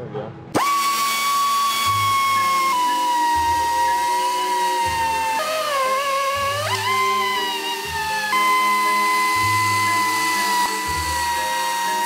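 A small air-powered belt sander starts about half a second in and runs with a steady high whine while it grinds down the metal edge of an ECU case. Its pitch sags under load around the middle and then picks back up.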